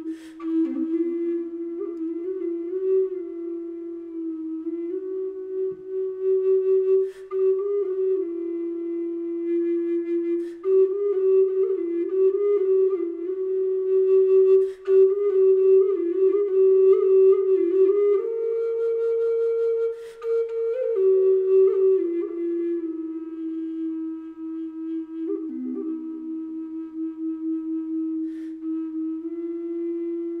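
Six-hole Native American style flute of Alaskan yellow cedar, in the key of low C and tuned to 432 Hz, played solo. It plays a slow, mellow melody of long held notes that step up and down within a narrow range, with short breathy attacks at some note changes.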